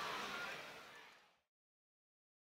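Steady background noise of a football stadium crowd, with no distinct shouts or chants, fading out to silence about a second in.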